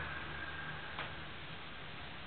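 Steady background hiss and low hum with a faint fading whine, broken by a single sharp click about a second in.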